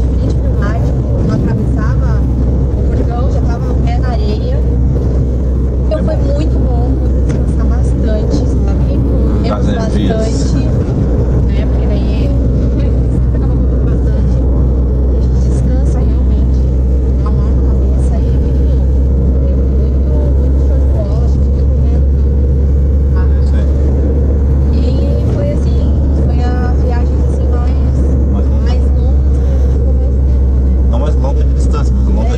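Steady low road and engine drone inside a moving van's cabin, with people talking over it throughout.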